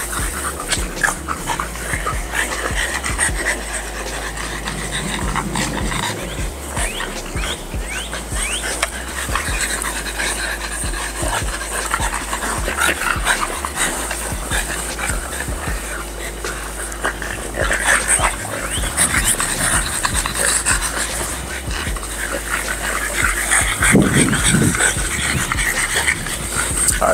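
French bulldogs panting and snuffling while moving about close by, with a brief louder sound near the end.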